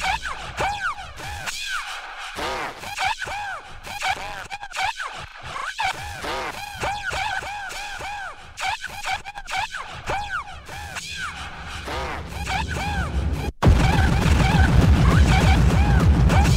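Hardtek (free-party techno) in a breakdown: the kick drum and bass are out, leaving repeated arching up-and-down synth sweeps and scattered noisy hits. After a brief cut near the end, the heavy kick and bass drop back in.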